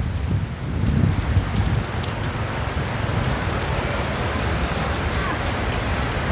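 Steady rain falling on the street and parked cars, a continuous hiss with a low rumble underneath.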